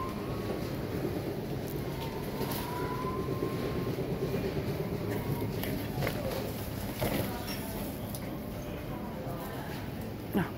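Shopping cart wheels rolling over a tiled store floor: a steady low rolling noise with a few faint clicks.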